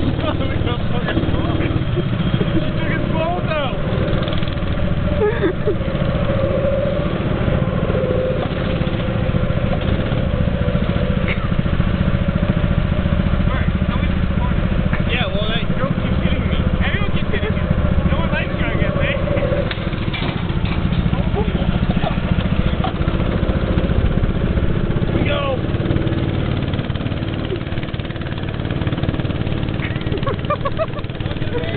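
Small petrol go-kart engines running steadily, heard from on board a kart, with a constant low drone.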